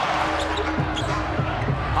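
A basketball being dribbled on a hardwood court, a few bounces in the second half, over steady arena crowd noise with a held low tone underneath.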